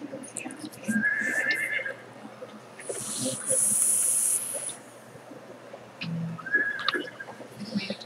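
A long drag on an SMY box-mod vape firing at 130 watts on a 0.54-ohm coil: a steady high hiss of the draw lasting about two seconds, set between two brief wavering whistles of breath.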